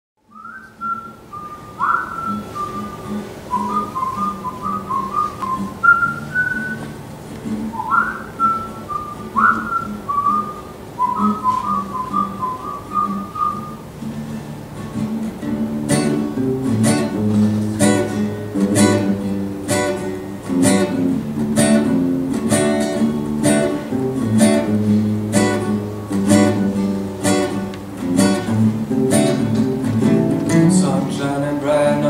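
Whistled bird-like phrases with quick upward slides and short trills over a soft, low acoustic accompaniment. About halfway through, acoustic guitars come in strumming steady chords over bass notes.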